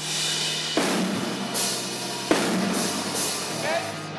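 Rock drum kit playing four heavy crash-cymbal and drum hits about three-quarters of a second apart, with the cymbals ringing on between them.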